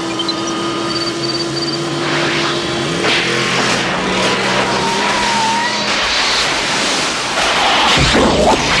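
Film soundtrack of a DeLorean car accelerating. A steady engine drone runs under a rush of crackling electrical noise that builds from about two seconds in and grows louder toward the end.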